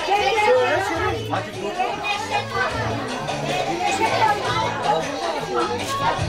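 Many people chattering at once, children's voices among them, over background music with a bass line.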